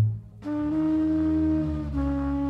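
Trumpet holding long sustained notes over a low double bass line. The sound drops away briefly at the start, the trumpet comes in about half a second in, and it moves to a new note near the end.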